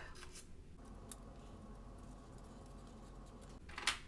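Small craft scissors snipping through sublimation transfer paper: a few faint snips near the start, then a few sharper clicks near the end.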